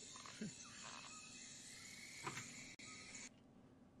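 Near silence: faint room tone with a couple of very soft blips, cutting to dead silence near the end.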